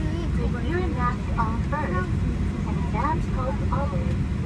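A woman's voice over the aircraft cabin's PA system, continuing the pre-flight safety announcement. Under it is the steady low rumble of the parked Boeing 737's cabin.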